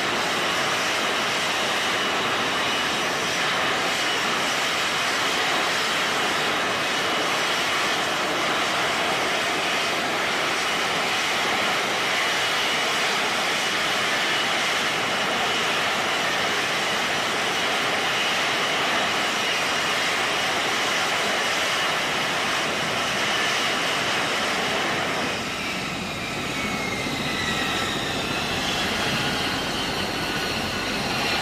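F-35B's Pratt & Whitney F135 jet engine and shaft-driven lift fan running at hover power: a loud, steady jet noise with a thin high whine held over it. About 25 seconds in, the noise dips slightly and falling whining tones come in.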